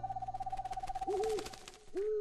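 A held, wavering tone fades out, then owl-like hoots from a cartoon bird start about a second in, one short hoot and the start of another at the end.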